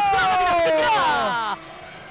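A sports commentator's long drawn-out shout, held on one vowel with its pitch sliding slowly down. It cuts off about one and a half seconds in, leaving quieter arena background.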